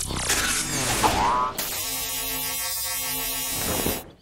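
Cartoon robot sound effects: a robot's groan with a rising whir in the first second and a half, then a steady electric buzz for about two seconds that stops just before the end.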